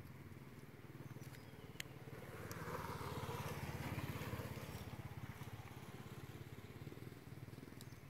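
A small motorcycle engine passing by, growing louder to a peak about three to four seconds in and then fading away. A couple of faint clicks sound over it.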